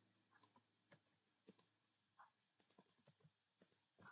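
Faint, scattered keystrokes on a computer keyboard: about a dozen separate short clicks at an uneven pace.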